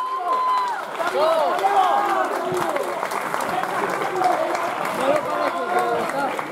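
A small live crowd shouting and clapping, many voices calling out over one another, with clapping running through most of it.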